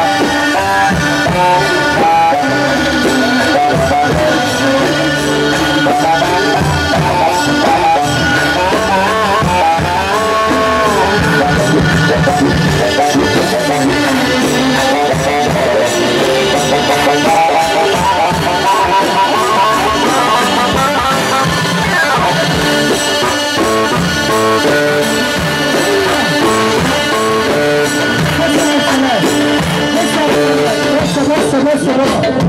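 Electronic keyboard playing a loud Egyptian shaabi wedding melody live, with quick runs of notes over a steady beat.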